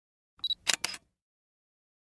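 Short intro sound effect: a brief high ping about half a second in, followed by two quick shutter-like clicks, then nothing.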